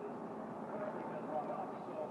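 Steady racetrack background noise: an even, low wash of distant engine sound with faint voices in it.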